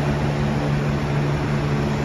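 Steady hum of an electric fan motor running, a constant low drone with a whir of moving air and no change in pitch.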